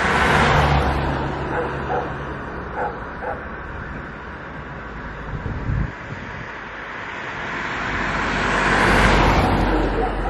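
Cars driving past on a road, tyre and engine noise swelling and fading. One car passes just after the start, and a second approaches and passes about nine seconds in, the loudest moment.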